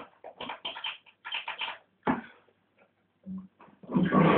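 Epiphone Sheraton II electric guitar played softly in short, choppy muted strums and a few picked notes, with gaps between them.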